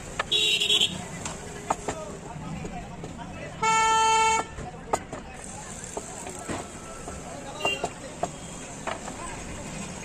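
A road vehicle's horn sounds once, a steady tone held for nearly a second about four seconds in. A shorter, higher horn toot comes near the start, over scattered light clicks and knocks.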